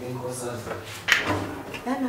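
A single sharp knock about a second in, with a low hum beneath it and speech starting again near the end.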